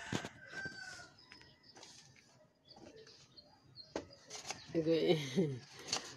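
A few knocks and creaks of a rough wooden ladder being climbed, with chickens and a rooster faint in the background.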